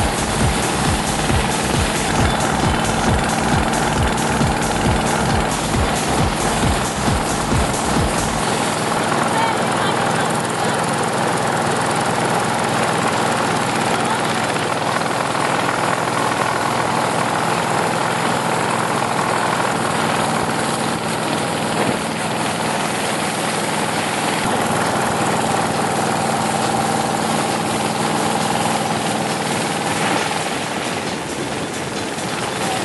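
Motorboat engine running loudly and steadily, heard from aboard the boat. A rapid low pulsing drops away about eight seconds in, leaving a steady drone.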